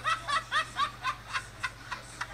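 A person laughing in a run of short, quick, high-pitched bursts, about four a second, growing fainter toward the end.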